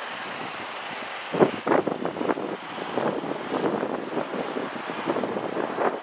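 Steady vehicle noise of the lot's surroundings, with irregular scuffs and knocks starting about a second and a half in.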